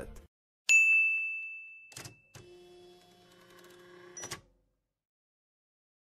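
Outro-animation sound effects: a single bright ding that rings out for about a second and a half, followed by a couple of clicks and a faint steady hum that ends in another click.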